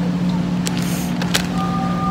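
A plastic bag of shaved cheese crinkling in a few short crackles as it is handled, over a steady low machine hum.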